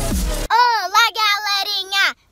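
Electronic dance music that cuts off abruptly about half a second in, followed by a young girl's high voice singing out in a drawn-out, sing-song way with a long held note.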